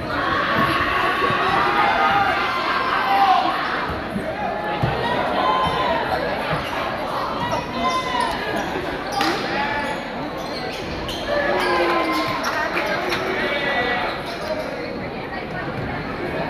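A basketball game in a gymnasium: a ball bouncing and knocking on the hardwood court at intervals, under continuous crowd chatter that echoes in the large hall.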